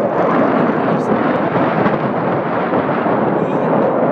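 Wind blowing across a handheld phone's microphone: a loud, steady rush of noise.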